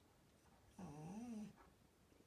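A small dog gives one short whine, less than a second long, about a second in; its pitch dips and then rises.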